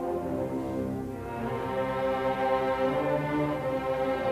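Orchestra with strings prominent playing a slow passage of held chords, dipping briefly about a second in and then swelling again.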